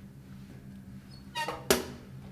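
A small hinged flap in a metal door briefly squeaks on its hinge, then shuts with a sharp clack near the end.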